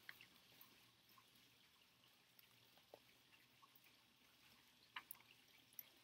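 Near silence: faint background hiss with a few faint soft clicks as the pages of a paperback picture book are handled and turned.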